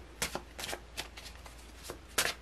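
A deck of tarot cards being shuffled by hand, cards dropped from one hand onto the other in a few short, irregular slaps.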